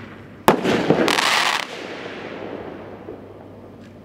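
A firework shell bursting in the air with a sharp bang about half a second in. About half a second of dense hissing crackle follows, then a long echoing tail that dies away.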